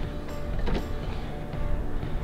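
Background music over the stock plastic hood scoop being pushed and slid out of a Subaru Forester's hood, with plastic rubbing and scraping as its clips let go.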